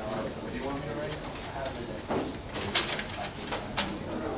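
Students murmuring quietly in a classroom, with paper rustling and a few short sharp clicks and knocks from desks and chairs in the second half.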